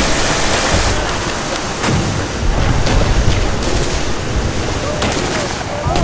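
Recreated beach-landing battle ambience: heavy surf and wind in a dense, loud wash, with men's voices shouting in the distance and an occasional gunshot, about two seconds in.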